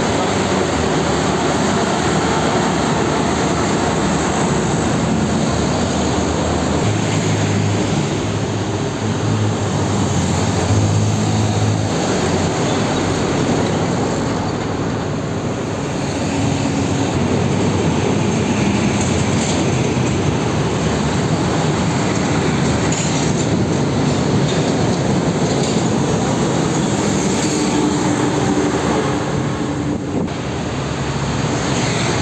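Heavy diesel trucks passing close by in busy road traffic, a continuous rumble of engines and tyres. A deeper engine drone stands out from about seven seconds in for some five seconds as a truck goes by.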